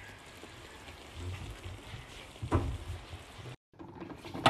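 Pan of noodle nests and minced meat simmering uncovered on the stove: a soft, even hiss of liquid bubbling away as the water cooks off, with a single short knock about two and a half seconds in. The sound cuts out for a moment near the end.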